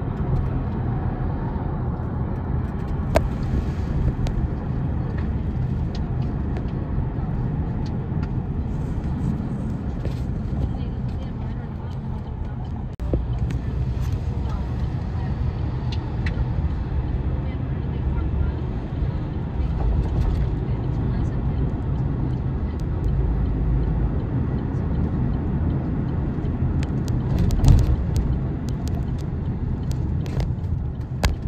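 Steady road noise heard inside a moving car: a low engine and tyre rumble through the cabin, with a few short clicks.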